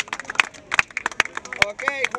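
Scattered, irregular hand claps from a small seated audience, a dozen or so separate claps rather than full applause.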